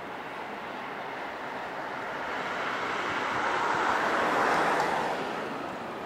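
A vehicle passing by: a rush of road noise that swells and fades, loudest about four seconds in.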